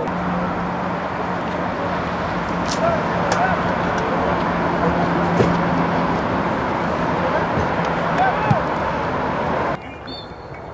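Steady roar of traffic on a nearby highway under outdoor soccer-field ambience, with faint distant voices and a couple of brief knocks. The sound drops away suddenly near the end.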